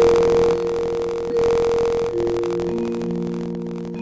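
Piano played slowly: chords struck and held so the notes ring on, with a new chord or note coming in about every second.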